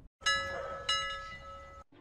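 A bell-like chime sound effect struck twice, about two-thirds of a second apart, each strike ringing on in several steady tones and fading away.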